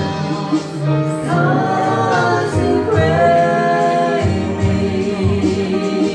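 Gospel song sung by several amplified voices, men's and a woman's, through microphones, with long held notes in the middle.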